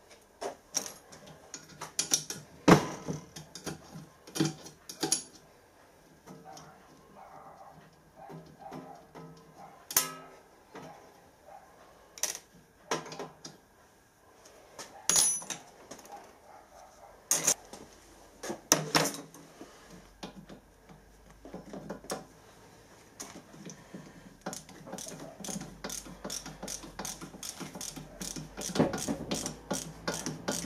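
Hand tools working on a large brass pressure gauge as it is taken apart: scattered sharp clicks and knocks of metal tools against the brass case. Near the end comes a fast, steady run of small clicks as a screwdriver is turned at the gauge's fitting.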